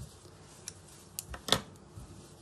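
Light handling sounds on a cutting mat: a few short clicks and knocks in the second half, the sharpest about one and a half seconds in, as a fabric patchwork square is smoothed flat and scissors are set down.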